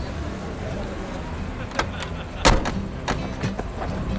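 Street ambience: a steady low rumble of traffic with a few sharp knocks, the loudest about two and a half seconds in.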